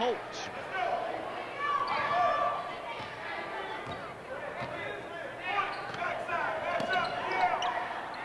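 A basketball being dribbled on a hardwood gym floor during play, with voices calling out in the gym around it.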